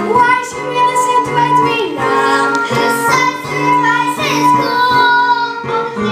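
A girl singing a musical-theatre song with instrumental accompaniment, holding sustained notes that change in pitch.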